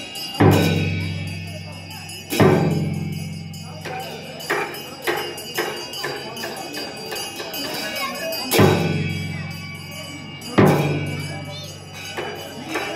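Percussion accompanying a masked ritual dance: heavy strikes that ring out with a deep, slowly fading tone, coming in two pairs about two seconds apart, with lighter strikes and jingling between them.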